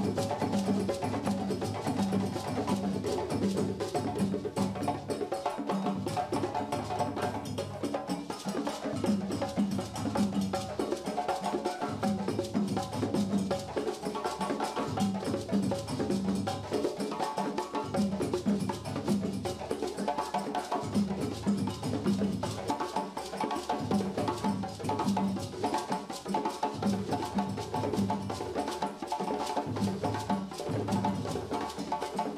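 West African djembe and dunun drum ensemble playing a fast, steady rhythm without a break. Sharp hand-struck djembe strokes ride over the pulsing, pitched bass tones of the dunun barrel drums.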